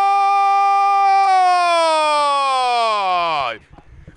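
A football commentator's long drawn-out "goooool" shout for a goal, held on one high note, then sliding down in pitch from a little over a second in and dying away about half a second before the end.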